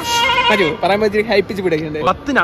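Speech: a person talking steadily, the voice wavering in pitch for the first half-second.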